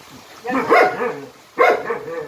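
Jindo dog barking twice, about a second apart, each bark drawn out with a bending pitch.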